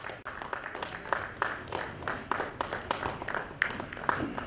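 Audience applauding: light, scattered hand clapping made of many irregular overlapping claps.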